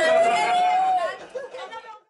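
A group of people chattering at a table, one voice holding a single long high note for about a second before it falls away; the chatter then fades out.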